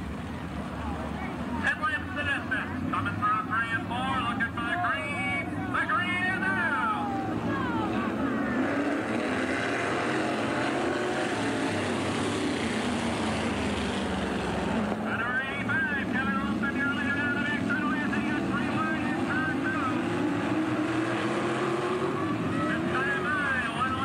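Dirt-track modified race cars running in a pack, their V8 engines rising and falling in pitch as they pass. A loud rush in the middle, as the pack goes by close, is followed by one engine's note climbing steadily.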